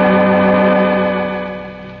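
Organ music sting: a loud held chord that fades away over the second half, marking the cliffhanger before the break.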